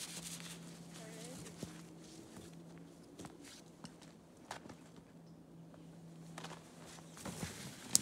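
Boots scuffing, stepping and knocking on a frozen patch of ice and then in snow: scattered soft footsteps and scrapes, with a sharp click near the end.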